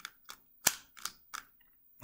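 3x3 speedcube layers being turned in quick succession: about five sharp plastic clacks as the faces snap through a commutator sequence, the loudest about a third of the way in.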